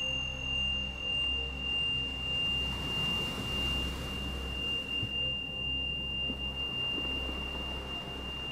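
Soft ambient meditation music: a low drone that swells and fades about once a second, under a single high ringing tone held steady throughout.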